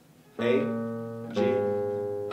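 Classical guitar playing two single plucked notes a step apart, A and then G about a second later. Each note rings on and fades, and a man's voice names each one as it is played.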